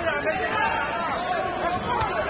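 Boxing arena crowd: many voices talking and calling out at once in a steady babble.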